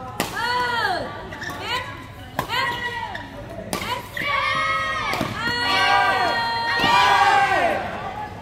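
Badminton rackets striking a shuttlecock in a rally, three sharp cracks a second or two apart. Between them come loud voices shouting and calling out, with the loudest shouting near the end.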